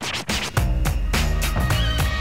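Hip-hop beat with DJ turntable scratching; a heavy bass line and drums come in about half a second in.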